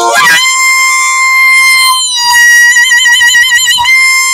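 Harmonica solo: a quick flurry of notes gives way to a long, high held note, then after a brief break about two seconds in, another long held note with a wavering vibrato.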